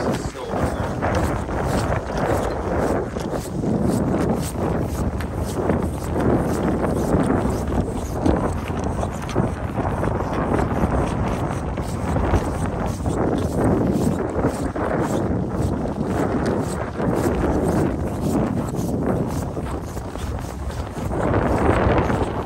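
Strong wind buffeting an unshielded camera microphone: a loud, uneven rumbling roar that rises and falls with the gusts.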